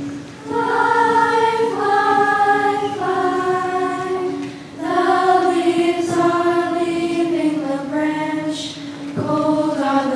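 A middle school choir singing, coming in about half a second in with long held notes in several voices, with brief breaks for breath about halfway through and near the end.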